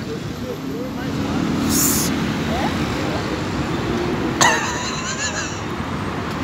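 City street traffic noise, with a vehicle's low steady drone for a few seconds and a short hiss near two seconds in. A sudden sharper sound with wavering pitch comes in at about four and a half seconds.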